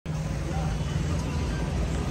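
Steady low rumble of street traffic, with a running vehicle engine at its core.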